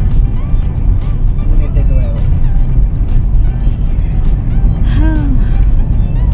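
Steady low road-and-engine rumble inside a moving Hyundai car's cabin, with music playing over it and a few short vocal sounds.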